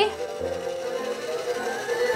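Toy claw machine's built-in circus music playing: a long held note over a repeating low beat.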